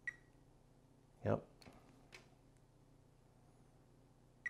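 Fluke 87 digital multimeter giving a brief beep, with a click, as the test probes touch a transistor's legs near the start, followed later by a couple of faint clicks from the probe tips.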